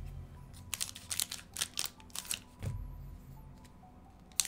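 A quick run of light clicks and taps in the first half, one more tap a little later, over faint background music.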